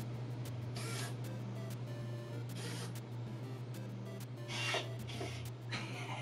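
Soft background music over a steady low hum, with several short hissy bursts spread through.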